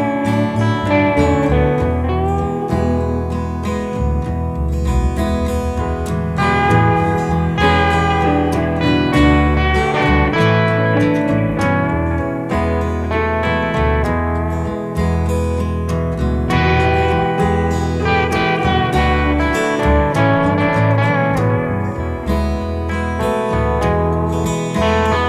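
Instrumental section of a song: a slide guitar plays gliding lead lines over guitar accompaniment and low bass notes.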